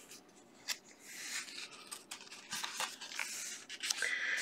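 Paper pages of a coloring book being turned by hand: a faint dry rustle with a few small clicks and taps as the sheets are handled.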